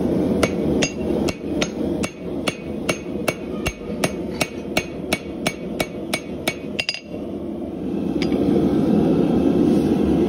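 Farrier's hammer striking a red-hot steel horseshoe on an anvil: about eighteen ringing blows at a steady two and a half a second, stopping about seven seconds in, with one more blow a second later. A steady low rushing noise runs underneath and grows louder near the end.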